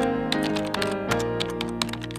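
Background music with held notes, overlaid by a rapid, irregular run of computer-keyboard typing clicks.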